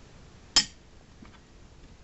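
A single sharp metallic clink about half a second in, followed by a couple of faint ticks: a small die-cast metal model part, such as a loader or excavator bucket attachment, knocking against a hard surface as it is handled.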